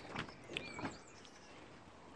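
Quiet background with a few faint, short chirps of small birds and a couple of soft ticks or rustles in the first second.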